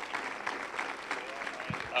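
Congregation applauding, a steady patter of many hands clapping with a few voices mixed in.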